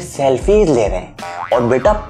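Animated male speech over background music.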